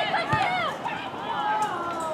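Several people shouting and calling out at once, short overlapping cries that rise and fall in pitch, with a longer falling call near the end. A short low thud comes about a third of a second in.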